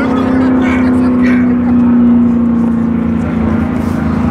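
A nearby engine running steadily at one even pitch, with faint voices over it.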